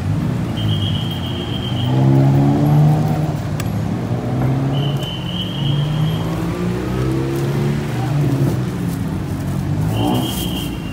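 A motor vehicle's engine running, its pitch rising and falling over several seconds. A high, steady tone sounds twice, each time for about a second.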